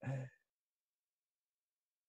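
A man's short sigh lasting a fraction of a second, followed by complete silence.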